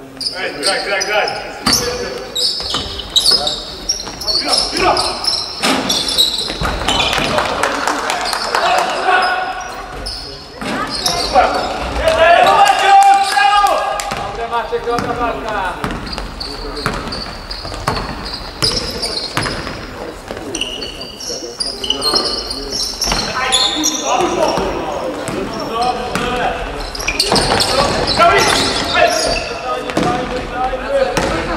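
Basketball game on a wooden court: the ball bouncing repeatedly as it is dribbled, mixed with players' voices calling out, all echoing in a large sports hall.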